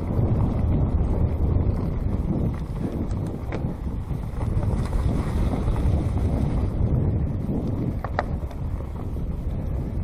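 Mountain bike descending fast on a leaf-covered dirt trail: steady rumbling wind buffeting the camera microphone, mixed with the tyres rolling over the trail. A brief high note sounds about eight seconds in.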